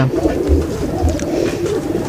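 A flock of Sialkoti domestic pigeons cooing together: a steady low murmur of overlapping coos, with a couple of deeper coos about half a second and a second in.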